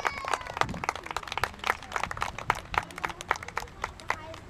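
A crowd clapping: many uneven claps from several people at once, with faint voices calling out near the start.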